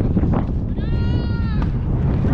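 A person's single long, high-pitched yell, held on one pitch for under a second around the middle, over steady wind rumble on the microphone.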